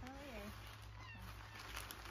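A short whining cry, about half a second long, right at the start, its pitch bending up and then falling away.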